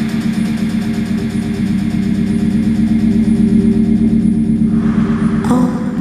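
Techno/house mix in a beatless breakdown: a sustained low synth chord holds without a kick drum. Shortly before the end it stops as a rising swell of noise builds.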